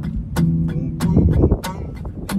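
Carbon-fibre acoustic guitar strummed in sharp, percussive strokes, a few a second in a steady rhythm, with the chord ringing underneath.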